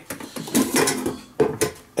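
Air fryer basket being pulled open, with a few sharp clicks and metallic clatters.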